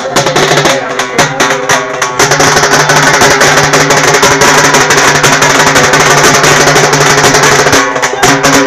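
A street drum band of large bass drums and smaller snare-type drums beaten with sticks. For the first two seconds the strokes fall at about four a second, then the playing turns denser and louder with a steady pitched tone running underneath.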